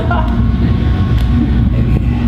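A steady low rumble, with soft laughter from the people seated at the front.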